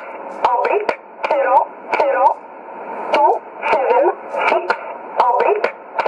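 E11 'Oblique' numbers station heard on a shortwave receiver: a recorded woman's voice reads a steady run of digits in English. The audio is thin and narrow, with sharp static clicks scattered through it.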